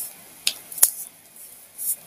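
A brief pause between spoken phrases, holding a few short clicks and hisses, with one sharp click a little under a second in.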